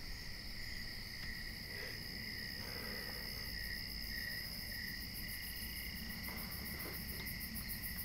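Insects chirping in a steady, continuous high chorus, over a low background rumble.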